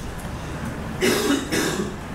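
A person coughing twice in quick succession about a second in, over a steady room hum.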